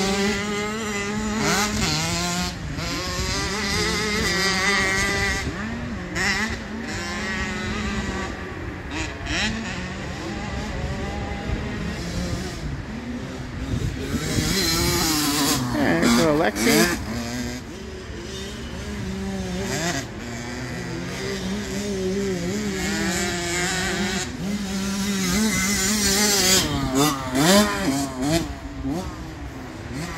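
65cc two-stroke youth motocross bikes revving up and down as they ride a dirt track. One bike passes close about halfway through, loudest as its pitch rises and then falls away.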